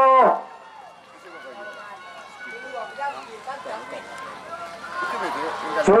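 A man's drawn-out shout of "ayo" ends about a third of a second in. Quieter, overlapping voices of people calling out follow and grow louder near the end.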